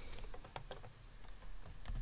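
A few light, scattered keystrokes on a computer keyboard over a faint low hum.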